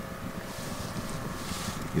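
Wind buffeting the microphone: a steady low rumble, with a faint brief hiss about one and a half seconds in.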